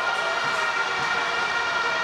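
Stadium crowd noise with horns in the stands blowing steady, unbroken tones that hold the same pitch throughout.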